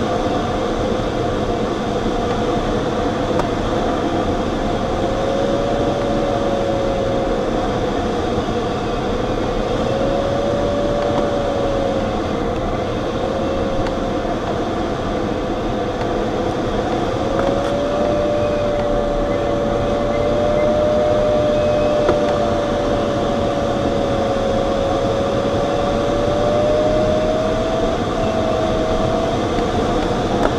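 Steady rush of airflow in a glider cockpit, with a continuous audio variometer tone that wavers slowly up and down in pitch and rises toward the end.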